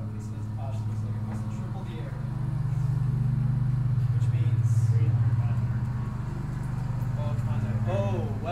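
A low, steady mechanical hum that swells louder for a few seconds in the middle and then eases back, with faint voices in the background.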